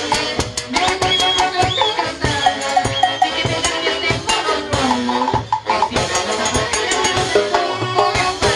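A Peruvian folk orchestra playing live: an instrumental passage with a pitched melody line over a steady, busy beat of drums, cymbals and rattling percussion, with no singing.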